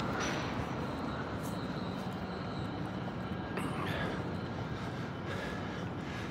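Steady hum of road traffic, an even wash of noise with no single loud pass standing out.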